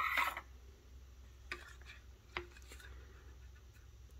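Light handling of a metal canning-jar lid on a silicone tray: a sharp knock right at the start, then two faint taps about a second and a half and two and a half seconds in, with quiet room tone between.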